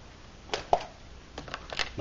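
Handling noise: a few short clicks and light knocks, about five spread over the second half, the first two the loudest.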